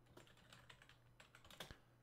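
Faint typing on a computer keyboard: a few soft, irregular key clicks as a file name is typed.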